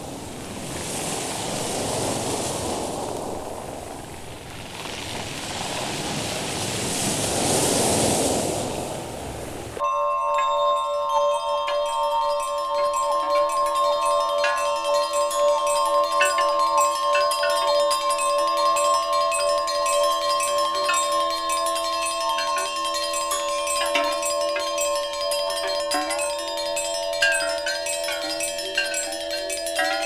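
Wind buffeting the microphone in gusts that swell and fade, then a sudden cut about ten seconds in to music of ringing mallet-percussion notes over held tones.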